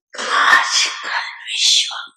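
Speech only: a woman talking into a hand-held microphone, in Hindi.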